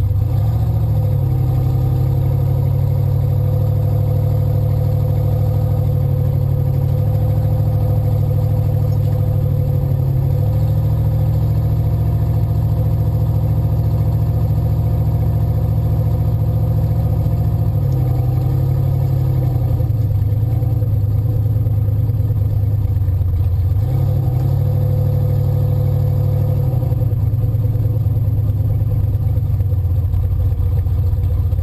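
Engine of a 1953 Chevrolet Bel Air drag car, heard loud from inside the cabin while the car drives slowly. The engine note shifts a few times as the throttle changes.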